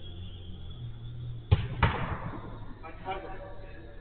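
A football being kicked and struck: two sharp thuds about a third of a second apart, about a second and a half in, the second echoing in the covered hall. A low steady hum and faint voices run underneath.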